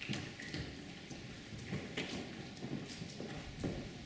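Footsteps on a hard floor: a string of uneven knocks and taps as a person walks forward.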